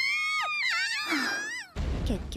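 Anime characters' high-pitched excited cries of "Oh! Wow!", several voices rising and falling. Near the end a sudden rush of noise cuts in.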